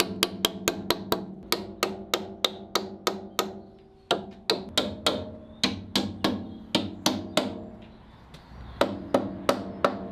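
A wooden mallet tapping wooden biscuits into the slots along the edges of oak boards: quick, even knocks about three a second, each with a short ringing note, in runs broken by two short pauses.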